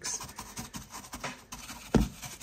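Wet mortar being dabbed onto carved polystyrene foam: a run of short, irregular scratchy dabs, with one sharp knock near the end.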